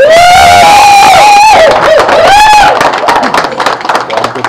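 A loud, shrill whooping cheer from someone close to the microphone, held for nearly three seconds with its pitch wavering, then scattered clapping from the crowd.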